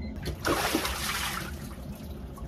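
Ice-cold water sloshing and streaming off a body as a person stands up out of an inflatable cold-plunge tub. It is loudest from about half a second to a second and a half in, then dies down to a trickle.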